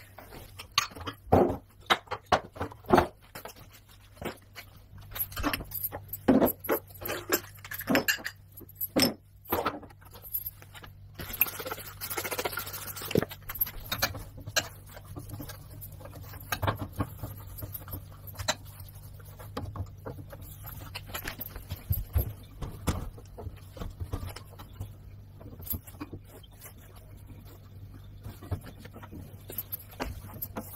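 Spice jars and glass bottles clinking and knocking as they are handled and lifted out of a pull-out wire drawer rack, densest in the first ten seconds or so, then softer rubbing and light taps as a cloth wipes the metal rack. A faint steady low hum runs underneath from a few seconds in.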